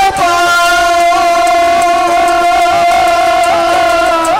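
A singer's voice holding one long, high sustained note in a bait (Saraiki folk devotional verse), the pitch nearly level, with small ornamental wavers near the end.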